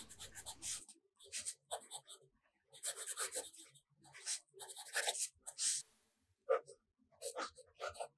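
Broad-nib fountain pen writing cursive on steno notebook paper: faint, quick scratches of the nib in short strokes with brief pauses between words.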